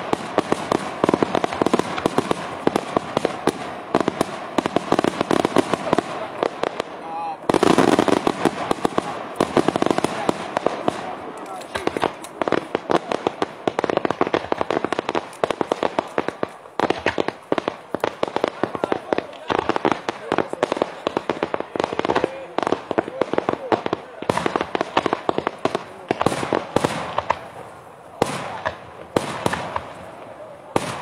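Daytime fireworks barrage: dense, rapid volleys of bangs from aerial shells bursting overhead. The barrage breaks off for a moment about seven seconds in, resumes at its loudest, and thins into more separate bangs over the last few seconds.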